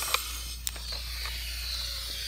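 A steady hiss with a few light clicks of plastic action figures and a toy spaceship being handled.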